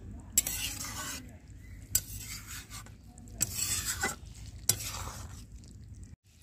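A metal spatula stirring and scraping a simmering fish curry in an iron kadai, in about five scraping strokes over a steady sizzle, as the curry reaches the end of its cooking.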